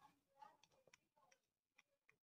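Near silence with a few faint, irregular clicks from a screwdriver loosening a screw on the metal end block of a copier's primary corona charger.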